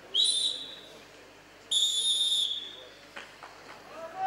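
Wrestling referee's whistle blown twice: a short blast just after the start, then a longer, steady blast about a second and a half later, stopping the action on the mat.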